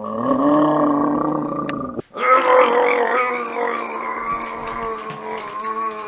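Guttural vocals from a man's voice: one held cry for about two seconds that cuts off suddenly, then a longer run of shifting growled vocal sounds.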